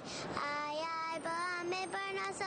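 A high-pitched voice singing a melody in held notes, with light musical accompaniment.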